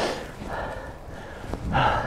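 A man's laboured breathing from the effort of cycling up a steep hill: a sharp gasping breath at the start and another loud breath near the end.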